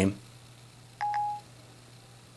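Short electronic chime from Siri on a 5th-generation iPod touch, about a second in: one steady tone lasting under half a second, the cue that Siri has stopped listening and is working on the spoken question.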